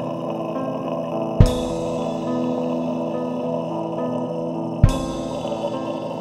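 Black/death metal music: sustained chords held steady, broken by two loud hits, about a second and a half in and again near the five-second mark.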